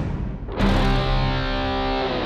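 Closing theme music of a TV drama: the rhythmic beat drops out briefly, then a held chord rings on from about half a second in.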